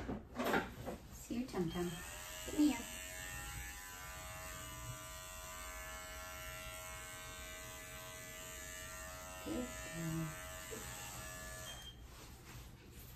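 Electric pet grooming clippers switched on about a second and a half in, rising quickly to a steady motor buzz while cutting a toy poodle puppy's coat, then switched off just before the end.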